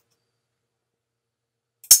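Near silence, then a single short, bright hi-hat hit near the end: the MPC software previewing the hi-hat sample as a note is moved down in the piano roll.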